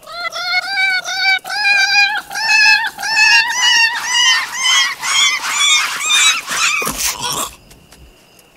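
A cat yowling over and over, about three cries a second, slowly climbing in pitch, cut off about seven seconds in by a heavy thud, as of the cat hitting the ground after a fall.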